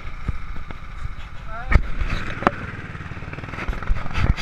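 Action camera being handled by hand: rubbing and rumble on the microphone with a few sharp knocks against the housing, with people's voices in the background.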